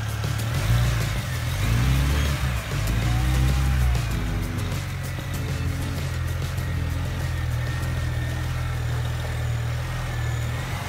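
Background music playing over the 3.0-litre twin-turbo inline-six of a 2007 BMW 335i running, a bit louder in the first few seconds.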